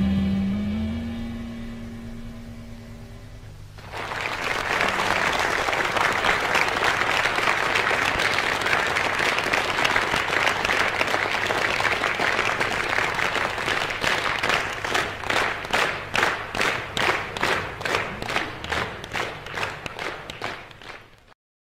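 The band's final guitar-and-bass chord rings and fades away over the first few seconds. About four seconds in, a live audience starts applauding. From about fourteen seconds in, the applause turns into rhythmic clapping in unison, roughly two claps a second.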